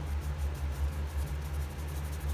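Steady low background hum, pulsing slightly, with no other distinct sound.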